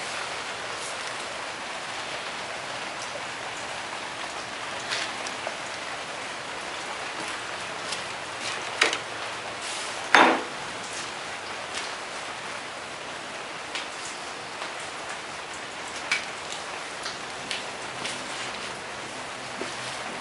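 Cut-open lithium polymer (LiPo) pouch cell fizzing under 50% nitric acid: a steady hiss with scattered crackles and pops, the strongest about nine and ten seconds in.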